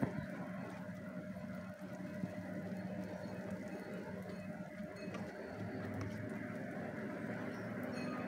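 Sliced shallots frying in a little oil in a non-stick wok, a soft steady sizzle as a spatula stirs them, over a steady low hum.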